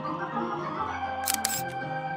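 Red two-manual electronic organ playing held chords with a Hammond-style tone over a changing bass line. Two sharp clicks cut in about two-thirds of the way through.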